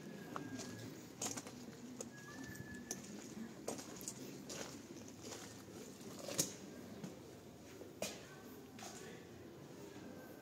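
Footsteps on a stone floor, sharp taps roughly once a second, the loudest about six and eight seconds in.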